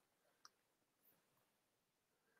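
Near silence, with one very faint click about half a second in.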